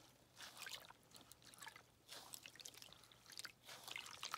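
Faint squishing and trickling of water as wet raw wool fleece is pressed down and squeezed by gloved hands in a tub of hot soapy water, without agitation, in a few small splashy patches.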